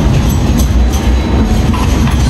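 Loud, steady low rumble of city street background noise.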